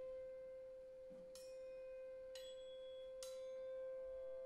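Quiet free-improvised saxophone and drum music: one long, steady, almost pure held note, with three light metallic strikes about a second apart, each leaving a high ringing.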